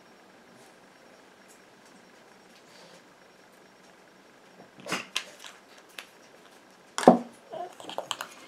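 Quiet room tone while essential oil is dripped from a small glass dropper bottle, then a few light clicks of bottle handling around five seconds in and a single sharp knock near the end as the bottle is set down on the table by the mixing bowl.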